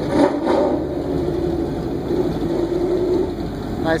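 Classic Camaro's engine running at a steady low idle as the car rolls slowly across a lot.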